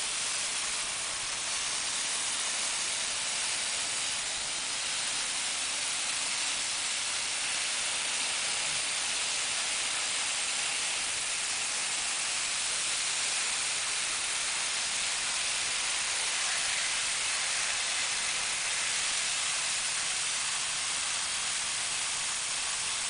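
Water spraying under pressure from a hose through a brass nozzle with a pressure gauge, at about 50 PSI, playing on a window's sill and frame: a steady, even hiss.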